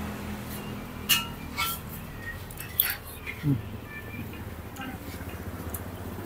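A few short clinks of a metal fork and spoon against a plate as noodles in soup are lifted and stirred, over faint background voices and a steady low hum.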